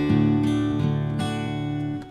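Background music: strummed acoustic guitar with chords ringing on, fresh strums about every half second.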